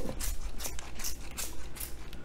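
Trigger spray bottle of hair spritz being pumped: several short sprays with sharp clicks at an uneven pace.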